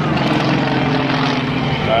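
Small aerobatic airplane's engine droning steadily overhead during a smoke-trailing manoeuvre.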